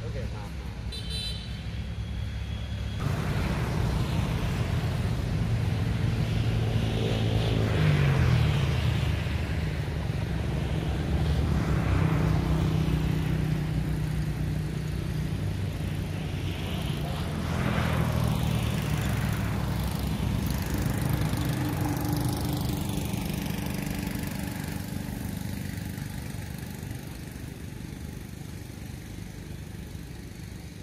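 A motor vehicle engine running close by, its pitch rising and falling. It grows louder about three seconds in and fades away toward the end.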